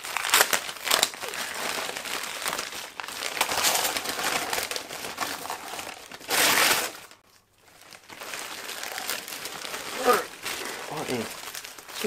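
Christmas wrapping paper crinkling and tearing as a present is unwrapped by hand, in an irregular run of rustles, with a louder burst about six seconds in.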